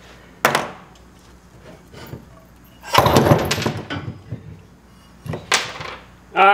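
Clanks and knocks of a custom-fabricated motor mount being worked loose and pulled off the frame rail beside the engine. There is a sharp knock about half a second in, a longer metallic clatter of several strikes around three seconds in (the loudest), and two quick knocks near the end.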